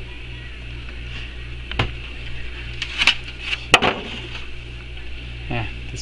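A few light clicks and knocks from objects being handled, the loudest about four seconds in, over a steady low hum.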